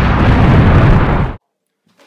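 Loud, noisy crash at the close of a heavy-metal intro jingle, cut off suddenly about a second and a half in.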